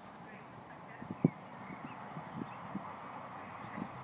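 A horse's hooves thudding on turf as it goes round a show-jumping course: a few irregular thuds, the loudest just over a second in.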